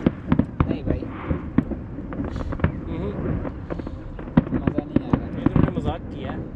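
Aerial fireworks bursting: an irregular run of sharp bangs and crackles, several a second.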